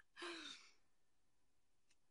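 A woman's single short breathy sigh, about half a second long, near the start.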